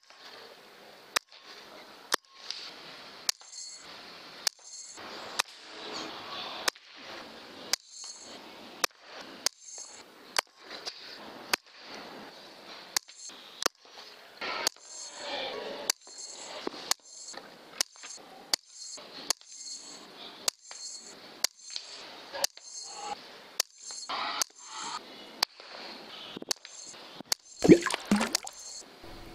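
A rapid string of .22 PCP air rifle shots, each a short sharp crack, coming about once or twice a second, with faint noise between them.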